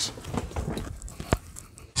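Quiet, irregular shuffling footsteps in sneakers, with one sharp click a little past halfway.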